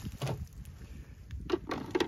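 A few light clicks and knocks of hard plastic being handled: a plastic phone holder lifted off a plastic beehive frame, over a low rumble.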